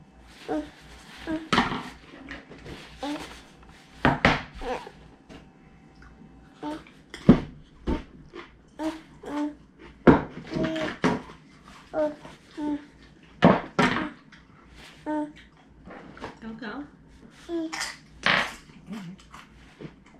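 A toddler babbling and making short vocal sounds, broken up now and then by sharp knocks.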